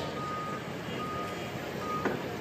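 A heavy-equipment backup alarm beeping at one steady pitch, about one short beep a second, over steady background noise.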